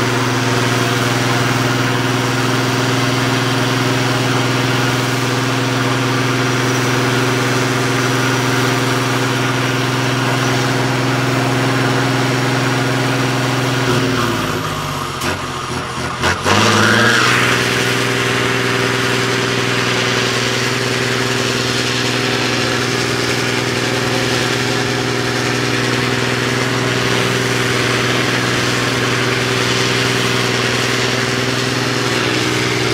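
Diesel engine of a 6x6 off-road trial truck running at steady revs as it crawls over rocks. About fourteen seconds in the engine sags in pitch and falters for a couple of seconds with a few knocks, then picks back up to its steady pitch.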